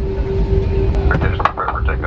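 Airliner cabin noise: a steady low rumble with a steady mid-pitched hum running under it. A voice comes in briefly during the second half.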